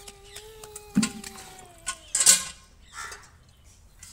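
Plastic bucket with a wire handle handled on a brick-paved ground: a low thud about a second in, then a louder scraping rattle just after two seconds. Under both runs a steady held tone that stops about two seconds in.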